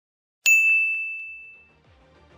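A single bell-like ding sound effect, struck about half a second in and ringing out over about a second.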